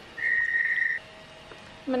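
A single steady high-pitched beep lasting under a second, followed by a much fainter, lower steady tone.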